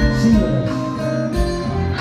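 Live band playing an instrumental passage with no singing: acoustic guitar strummed over bass and a steady low beat.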